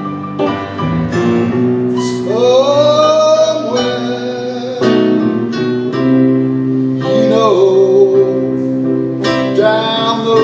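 Slow blues played live on a Gibson ES-335 semi-hollow electric guitar over keyboard accompaniment, the guitar taking an instrumental lead with bent notes about two seconds in and again past seven seconds.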